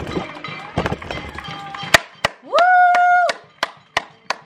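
Hands clapping: a couple of sharp claps, then about three a second near the end. In the middle, one long whistle note, about a second long, that rises at its start and then holds steady.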